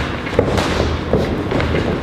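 Boxing gloves smacking against focus mitts during mitt work: several sharp smacks at an irregular pace.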